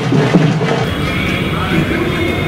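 Background music that cuts off about a second in, giving way to outdoor sound of a crowd of people talking.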